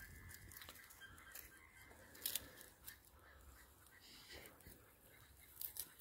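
Near silence with faint, scattered crunching clicks of footsteps on dry wheat stubble, a little louder about two seconds in and again near the end.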